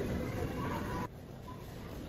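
Background noise of a large retail store: a steady low rumble with faint distant sounds, dropping sharply in level about a second in.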